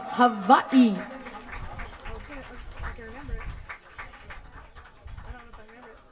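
A few short, loud yelping voice calls that slide down in pitch in the first second, then quieter murmur of voices with scattered small clicks.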